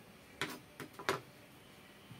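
Kitchen knife striking a plastic cutting board: about five short, sharp clicks in quick succession, the loudest about a second in.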